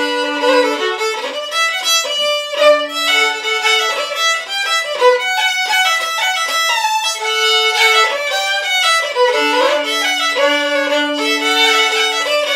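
Solo fiddle playing an Irish slide in the Sliabh Luachra style: a steady run of quick bowed notes without a break.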